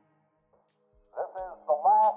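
A fading musical tail drops to near silence, then about a second in a recorded train-announcement voice begins over a low steady tone.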